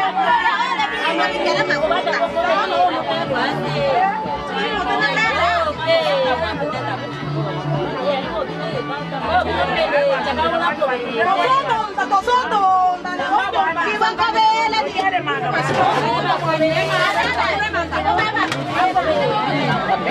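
A room full of women talking and calling out over one another, with music playing underneath.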